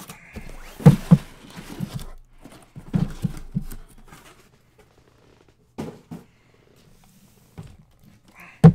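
Cardboard trading-card boxes being slid out of a shipping case and set down on a stack: a few sharp knocks with scraping and rustling of cardboard between them, then two more single knocks late on.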